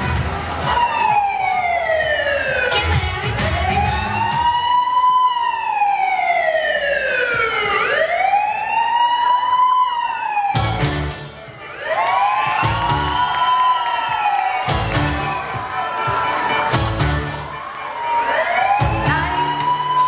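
A wailing siren sound effect mixed into a performance backing track, its pitch sweeping slowly down and back up again and again, over a pulsing music beat. The siren briefly drops out about eleven seconds in, then returns.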